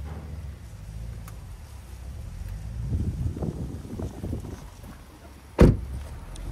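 A 2012 Kia Sportage's passenger door being shut: some low scuffing and handling noise, then a single loud thump near the end as the door closes.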